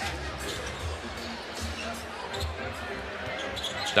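A basketball being dribbled on a hardwood court, a low thump about once a second, under a steady arena crowd murmur.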